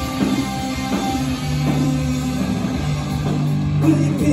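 Live punk rock band playing an instrumental passage: distorted electric guitars holding chords over bass and a driving drum kit, with no vocals.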